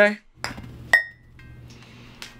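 A golf putter striking a ball: one sharp metallic click with a brief ringing tone about a second in, followed by a few faint light ticks.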